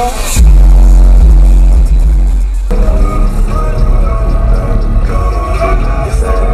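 Car audio system playing bass-heavy music at very high volume, its subwoofers' deep bass dominating. About three seconds in the sound changes abruptly to a quieter stretch of music with less bass.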